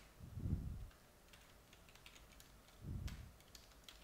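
Typing on a computer keyboard: a scatter of quiet key clicks, with two duller low thumps, about half a second in and around three seconds in.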